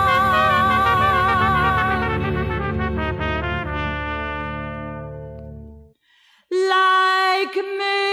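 Traditional jazz band holding a final chord, the top horn note wavering with vibrato, which fades away about six seconds in; after a short silence a new piece starts with a held note.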